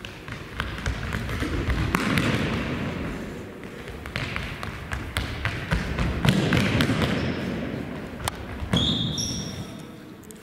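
Running footsteps of sprinters on a sports hall floor, a quick patter of footfalls echoing in the hall. They grow louder twice as the runners pass close, and a short high shoe squeak comes near the end.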